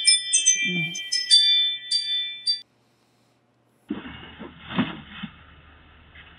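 Doorbell chime playing a bell-like melody of ringing notes, which stops about two and a half seconds in. After a second of silence comes the tinny, thin-sounding audio of a Ring doorbell camera's recording.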